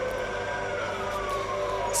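A siren wailing: its pitch peaks about half a second in, then slides down over the next second, over a steady low hum of background noise.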